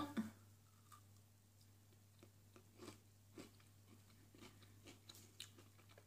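Faint chewing on a bite of a mini Boost chocolate bar, soft crunching clicks every half second or so from its crisp, caramel-filled centre.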